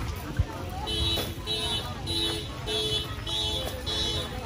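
An electronic beeper sounding the same short beep over and over, just under two a second, starting about a second in, with people's voices around it.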